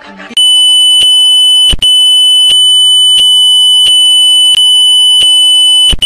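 A loud, steady, high-pitched electronic tone that starts abruptly about half a second in, with a lower hum under it and a regular click about every 0.7 seconds. It breaks off for an instant just before two seconds in.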